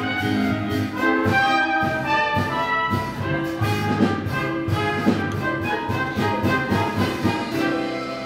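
Orchestral overture to a stage musical, brass to the fore, playing chords that change note continually, with two sharp accents about four and five seconds in.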